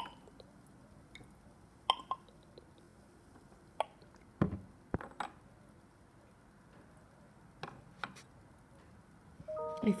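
Scattered short clicks and knocks of glass test tubes being handled and knocked against a plastic test-tube rack, about nine in all, one heavier thump about halfway.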